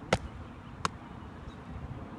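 Two short, sharp knocks about three-quarters of a second apart, over faint steady outdoor background noise.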